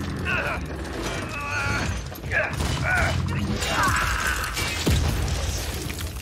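Animated-battle sound effects: mechanical whirs and creaks of a powered armour suit over a steady low rumble, with short curving vocal sounds. A heavy thud lands about five seconds in.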